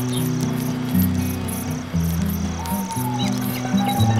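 Crickets chirping in an even rhythm, about two and a half chirps a second, over music of held low notes that change about once a second.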